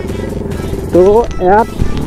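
Motorcycle engine running with a low, rapidly pulsing rumble, heard clearly for the first second before a voice covers it.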